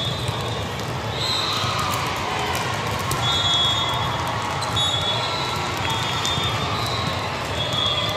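Echoing crowd chatter and noise of a large indoor volleyball hall during a rally, with several short high-pitched squeaks and sharp knocks of balls being played.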